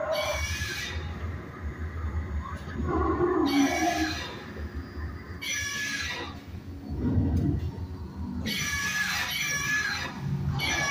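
Recorded dinosaur screeches and roars from an animatronic ride's sound system: about four separate calls a couple of seconds apart, over a steady low hum.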